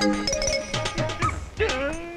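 Comic film background score with steady sustained tones and a regular percussive beat. Near the end a man's voice breaks into a wavering, whining cry.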